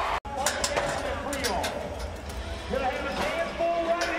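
Bull-riding arena sound: crowd noise and raised voices with a few sharp knocks, after a sudden brief cut-out about a quarter second in.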